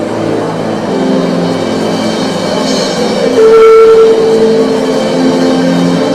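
Live church worship music with drums and sustained chords; a long held note about three and a half seconds in is the loudest moment.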